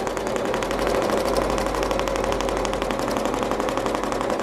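Domestic sewing machine stitching steadily at speed through a quilt, a fast even rattle of needle strokes, while free-motion quilting along a ruler.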